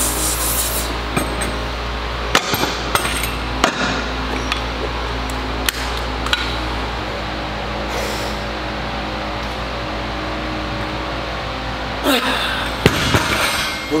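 A few sharp metal clinks and knocks in the first half as bumper plates are slid and fitted onto a hex trap bar, over steady gym background noise.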